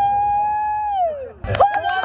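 A spectator's long, high cheering cry that rises, holds for about a second and falls away, then sharp hand claps and another long cheering cry about one and a half seconds in.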